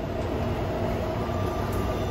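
Taipei MRT metro train at a station platform, its doors open: a steady low rumble and hum of the train and station.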